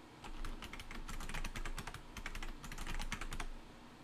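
Computer keyboard keys clicking in quick runs as a password is typed and then typed again to confirm it, with a short pause about two seconds in.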